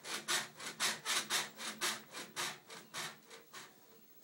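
Doorway baby jumper rasping rhythmically as it bounces on its straps, about three or four rasps a second, dying away near the end as the bouncing stops.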